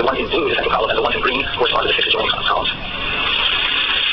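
A person's voice talking, with no words the recogniser could make out, over a steady high hiss; the talking stops about two and a half seconds in and the hiss goes on.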